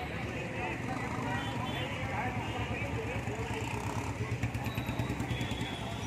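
Street traffic of motorcycles and scooters running past, with people's voices talking over it; a closer engine's rapid pulsing grows louder about four seconds in.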